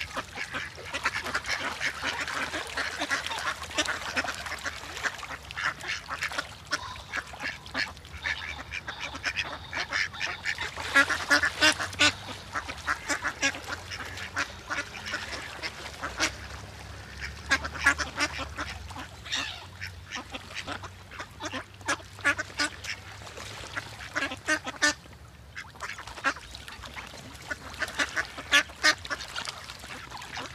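Ducks quacking: many short, raspy calls in irregular runs, with a few brief pauses.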